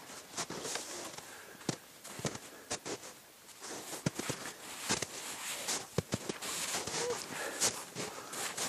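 Snow crunching in irregular crackles and clicks as a small child crawls on hands and knees up a snowy slope.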